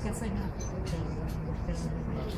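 Indistinct talking over a steady low rumble of room noise.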